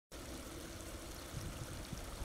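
Faint, steady noise of shallow water trickling at a shoreline.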